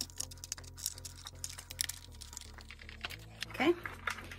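Quick small plastic clicks and knocks as caster wheels are handled and pushed into the sockets of a plastic five-star chair base, over quiet background music.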